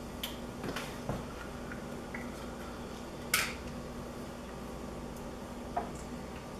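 Light clicks and clinks of utensils and a steel saucepan being handled at a stovetop, one sharper clink a little past halfway and another near the end, over a steady low hum.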